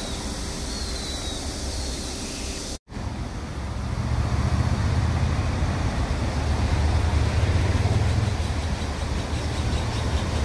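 Road traffic noise: a steady wash of passing cars with a low rumble. The sound drops out for an instant just under three seconds in, and the rumble grows louder from about four seconds.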